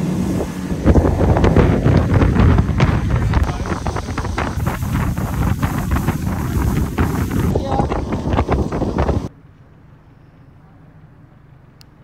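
A boat running on the water, with its motor and heavy wind buffeting on the microphone. The noise cuts off suddenly about nine seconds in, leaving a low, steady hush.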